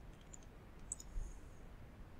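A few faint computer mouse clicks, a pair about a third of a second in and more around one second in.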